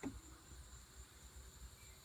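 A wall toggle switch clicks once at the very start, then faint, steady high-pitched chirring of crickets over near silence.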